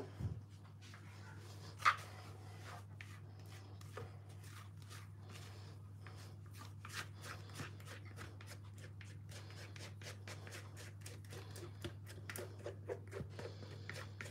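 Silicone spatula scraping a thick, wet yogurt and cheese filling out of a metal mixing bowl. It makes a run of soft scrapes and small clicks, with one sharper click about two seconds in, over a low steady hum.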